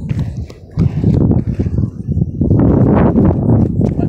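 Small plastic penny-style skateboard rolling on a concrete sidewalk: a loud, rough rumble from its wheels with irregular knocks, swelling about a second in as the rider pushes off.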